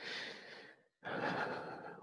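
A woman breathing close to the microphone: two slow breaths, the second one just before she starts to speak again.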